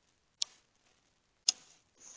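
Two short, sharp clicks about a second apart over otherwise near silence, picked up by a Ring doorbell camera's microphone.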